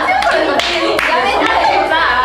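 Several young women laughing hard together, with a few hand claps among the laughter.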